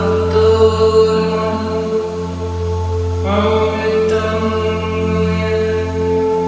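Tibetan singing bowls played with a mallet, ringing in steady overlapping tones, under a woman's voice chanting a mantra in long held notes; a new chanted phrase begins about three seconds in.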